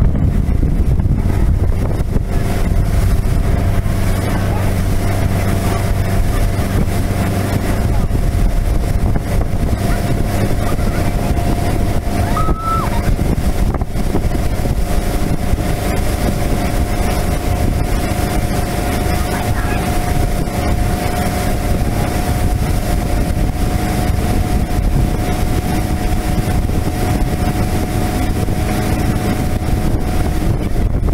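Motorboat engine running steadily at towing speed, with wind buffeting the microphone.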